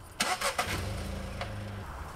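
A small hatchback's engine being started: a brief cranking clatter just after the start, then the engine catches and settles into a steady idle.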